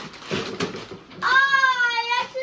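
Gift wrapping paper rustling and tearing, then about a second in a child's long, high-pitched excited cry, held for most of a second.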